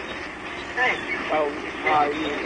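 Several short, wordless vocal cries from people, about three brief calls that bend in pitch, over a steady background hiss.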